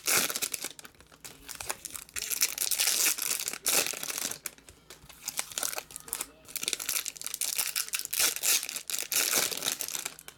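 Foil wrappers of Topps Chrome baseball card packs being torn open and crinkled by hand, in repeated crackling bursts with short pauses between them.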